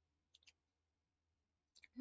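Near silence: room tone with two faint short clicks about a third and half a second in.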